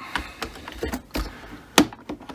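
Scattered plastic clicks and creaks from a plastic pry tool levering up the Cricut Maker's snap-fit top panel, about five in all, with a sharp, louder click near the end as a clip pops free.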